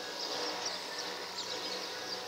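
Outdoor rural ambience: repeated short, high-pitched chirps in little clusters over a steady background hiss.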